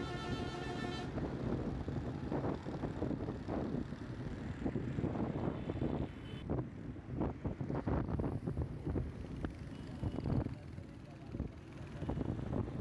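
Background music cuts off about a second in. Traffic and road noise from a moving vehicle follow, with wind buffeting the microphone.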